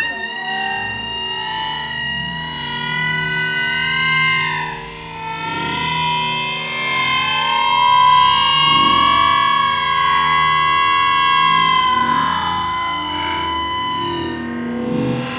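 Music with a distorted electric guitar playing long, held, slowly bending notes.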